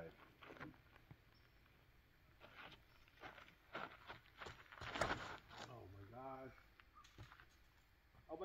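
Faint footsteps and scuffs on the ground, then a sharp knock about five seconds in, followed by a brief wordless voice.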